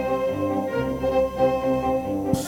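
Orchestra playing an instrumental passage of held chords over a low bass line that moves note by note.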